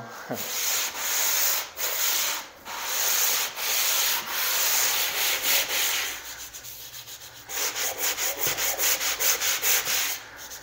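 Handheld drywall sanding block scraping over dried joint compound (mud) on a wall, in strokes of about one a second. Past the middle the strokes go lighter for a moment, then turn quick and short, about three to four a second.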